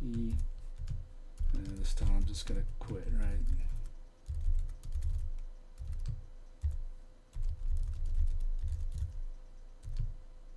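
Computer keyboard typing: a run of keystrokes, with a voice heard briefly over the first few seconds.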